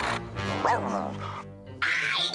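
Orchestral film score with a cartoon dog's single short yelp a little over half a second in.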